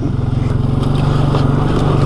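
Can-Am Outlander 700 ATV engine running at a steady speed as it drives along a rough bush trail.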